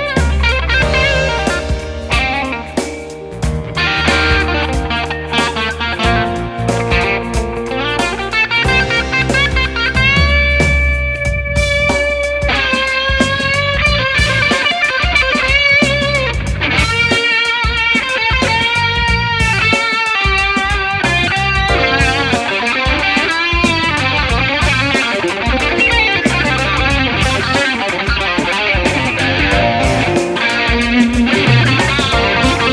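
Electric guitar lead played on a Fender Custom Shop Roasted 1961 Stratocaster Super Heavy Relic, its single-coil pickups heard through an amplifier. Long held notes with string bends and vibrato come from about ten seconds in, and quick runs of notes follow in the last third.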